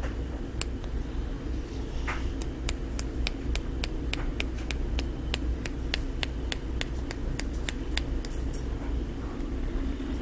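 Paint being flicked off a stiff square-tip paintbrush by a finger striking the brush's metal ferrule, laying a spatter effect on a lure: a run of sharp light ticks, about three or four a second, densest from about two to eight seconds in. A steady low hum runs underneath.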